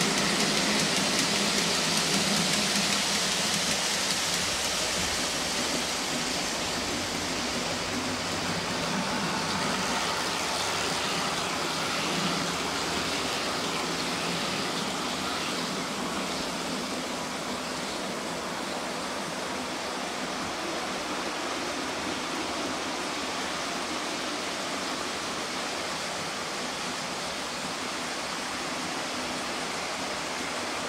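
Model railway train, a Class 50 diesel locomotive hauling a rake of coaches, running along the track with a steady rushing rumble of wheels and motor. It is loudest at first and eases off over the first half as the train moves away, then holds at a lower steady level.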